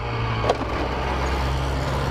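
Honda NSR 125 two-stroke single-cylinder motorcycle engine running steadily while ridden slowly, heard over wind noise on a microphone that has lost its foam windscreen. A brief click comes about half a second in.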